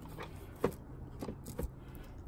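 Handling noise as a cardboard game box is lifted out of a plastic storage tote: one sharp knock about two-thirds of a second in, then a few softer clicks.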